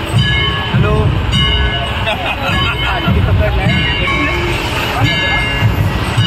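Street procession hubbub: many people's voices mixed with music and a heavy low rumble.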